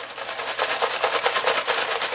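Small paper slips rattling and rustling inside a box as it is shaken to mix them: a fast, steady rattle.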